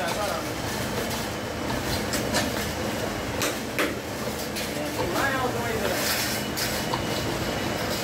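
Belt-driven roll-forming machine running, its grooved steel rollers pressing thin metal strip. There is a steady mechanical rumble, with sharp metallic clacks at irregular intervals.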